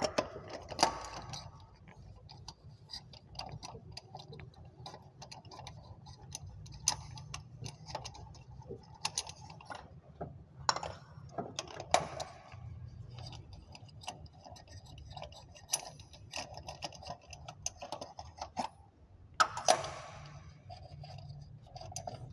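Ratchet wrench with a spark plug socket clicking in short, irregular runs of ticks as spark plugs are loosened from the engine, with a few louder knocks of the tool about halfway through.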